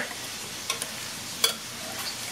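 Ground beef and onion sizzling in a frying pan, a steady hiss, with a few light utensil clicks.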